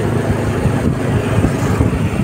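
A moving road vehicle heard from inside: a steady low rumble of engine and road noise.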